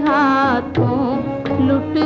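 A woman singing a slow Hindi film song from the 1940s, holding long wavering notes with vibrato over a held instrumental accompaniment.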